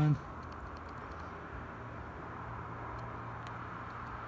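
A few faint clicks of the push buttons on a digital torque wrench being pressed to raise its setting from 20 to 40, over a steady low background hum.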